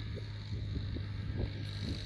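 Diesel tractor engine running steadily under load as it pulls a cultivator through dry soil, a constant low hum.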